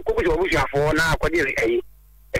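Speech only: a person talking on a radio broadcast, stopping shortly before the end.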